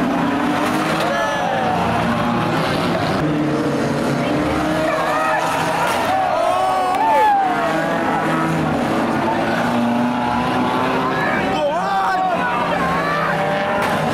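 Banger racing cars' engines running and revving on the track, the pitch rising and falling again and again, with voices from the crowd mixed in throughout.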